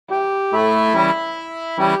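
Background instrumental music: sustained held chords that change about every half second, starting right at the opening.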